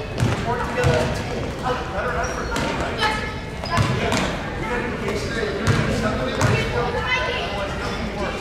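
A basketball being dribbled on a gym floor: several low bounces at uneven spacing, over the voices of players and spectators in a large hall.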